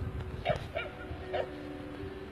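Dogs barking in short yips, three in quick succession.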